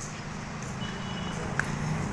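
Steady low hum of an idling engine, with street background noise.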